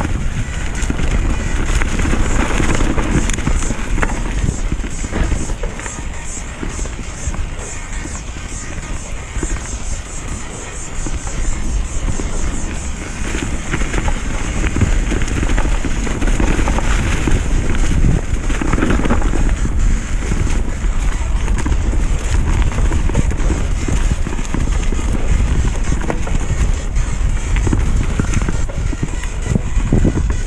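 Mountain bike riding down a leaf-covered dirt trail: tyres rolling over dirt and leaves, and the bike rattling over bumps, with wind buffeting the camera microphone as a steady low rumble. The noise eases off for a few seconds partway through.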